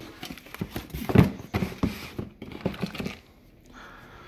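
Cardboard boxes being handled and rummaged through: irregular rustles, scrapes and knocks, the loudest about a second in, dying away in the last second.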